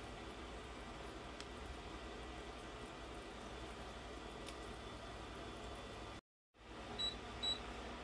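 Faint steady low hum, then two short high-pitched beeps about half a second apart near the end: an induction hob's touch controls being pressed to raise the heat.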